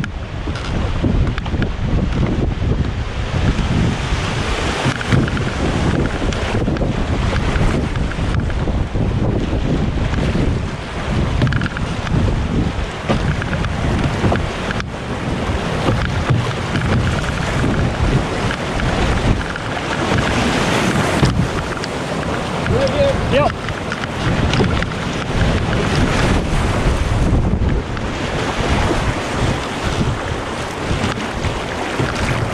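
Whitewater rapids rushing and churning around a canoe as it runs through them, steady and loud, with heavy wind buffeting on the microphone.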